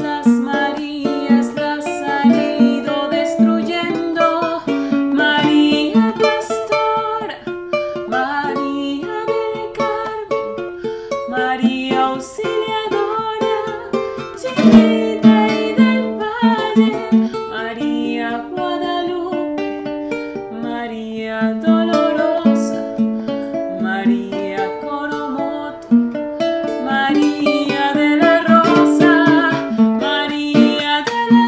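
A woman singing a hymn to the Virgin, accompanied by a strummed acoustic string instrument.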